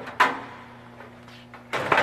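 Thin aluminium access panels pulled off their magnetic catches and handled against the kiln's metal side: a sharp metallic clack about a quarter second in, then a longer rattling clatter near the end. A faint low steady hum runs underneath.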